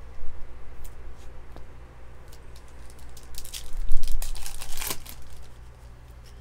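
Foil wrapper of a baseball card pack being torn open and crinkled by hand: a few light crinkles at first, then a dense burst of crinkling from about three to five seconds in, the loudest part.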